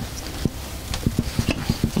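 Improvised fuze being screwed by hand into a grenade body for a drone-dropped munition: a quick run of small, irregular clicks and taps of metal parts starting about half a second in.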